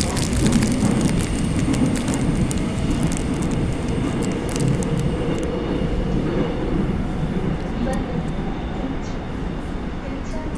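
Seoul Metro Line 9 train running between stations, heard from inside the car: a steady low rumble with scattered clicks and rattles in the first half.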